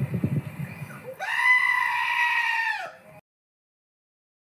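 A goat giving one long, loud bleat that starts about a second in, holds steady and drops in pitch as it ends. Before it there is a low rumble.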